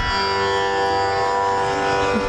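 A steady drone of Carnatic music accompaniment holding one pitch with many overtones, sounding unbroken between spoken phrases.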